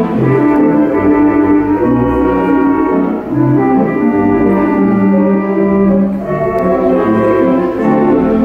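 Theatre organ being played: full, sustained chords with orchestral-sounding stops, changing every second or so over a low pedal bass line.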